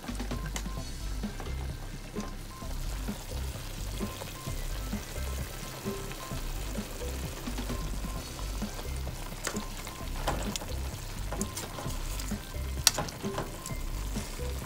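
Chicken pieces browning in hot oil and sofrito in a pot, sizzling steadily, with a few sharp clicks of the tongs against the pot in the second half.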